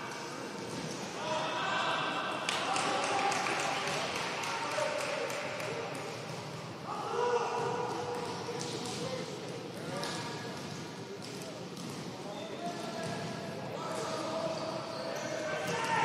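Echoing shouts from futsal players and coaches, some of them held calls, with the thuds of the ball being kicked and bouncing on the indoor court.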